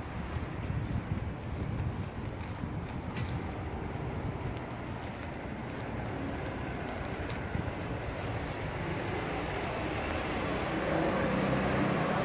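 City street background: a low traffic rumble with wind buffeting the microphone, growing louder near the end as a vehicle engine comes closer.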